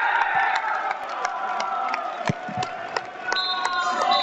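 A few voices shouting and cheering after a goal on a football pitch with the stands empty, so single shouts stand out rather than a crowd's roar. Sharp claps or knocks come among the shouts, and a high whistle sounds near the end.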